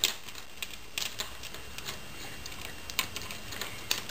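Small irregular clicks and ticks of beads and metal wire knocking together as a loose wire end on a beaded wire snowflake is handled and moved into place. The sharper clicks come at the start, about a second in, and near the end.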